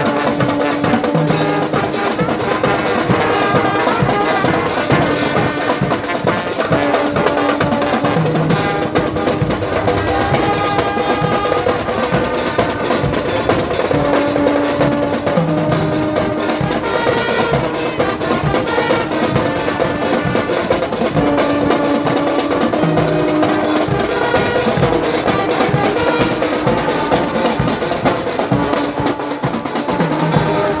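Live marching band (fanfarra) playing: trumpets and trombones hold a melody over a steady, dense drum beat with bass drums.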